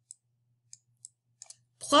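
Sharp, faint clicks of a stylus tip tapping a writing tablet as handwriting goes on, about five spread irregularly, over a faint low steady hum.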